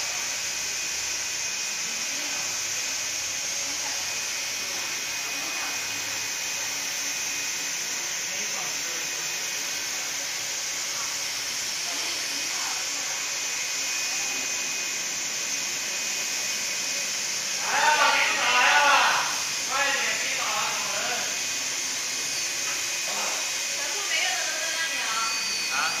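UV LED flatbed printer running as its print carriage travels over the bed: a steady hiss with a thin high whine. Indistinct voices break in about two-thirds of the way through and again near the end.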